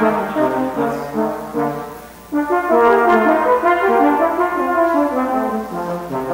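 Live duet of brass instruments, two parts playing sustained notes together. The playing fades and drops away about two seconds in, then comes back loud a moment later.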